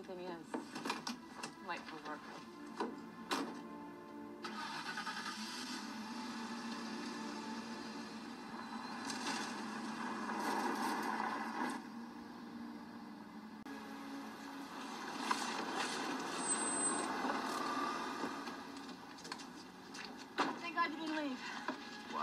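Film soundtrack mix: background music with a vehicle engine running, and a few sharp clicks or knocks in the first four seconds.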